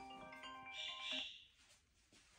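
Smartphone ringtone playing a melody of short, bright tones, cut off about a second and a half in as the call is answered.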